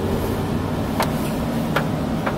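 Steady road noise inside a moving truck's cabin: engine and tyres running on a wet road, heavy at the low end with a hiss above it. Two faint clicks sound about a second in and near the end.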